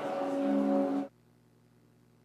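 Church organ holding a chord, its lower notes stepping down, then released sharply about a second in, leaving only a faint low hum.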